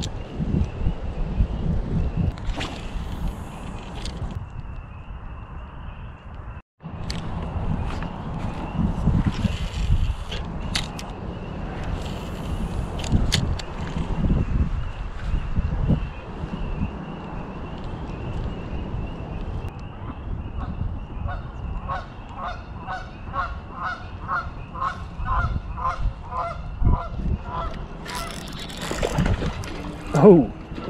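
Wind rumbling on the microphone, with a run of evenly spaced calls, about two or three a second, in the second half.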